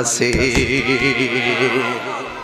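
A man's voice, amplified through a microphone, drawn out in one long quavering wail whose pitch shakes rapidly throughout, like weeping.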